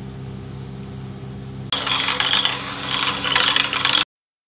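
A steady low hum, then about two seconds in an electric hand beater starts whisking a raw egg with sugar, salt and pepper in a ceramic bowl: a loud, harsh rattling whir as the beater churns and knocks against the bowl. This is the first beating of the egg for homemade mayonnaise.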